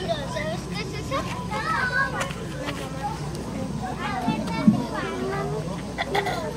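Indistinct crowd chatter with children's high voices, over a steady low hum, and one brief thump a little before the end.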